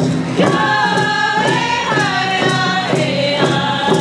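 A group singing a First Nations round dance song in unison chant-like voices, over a steady beat struck on rawhide frame hand drums.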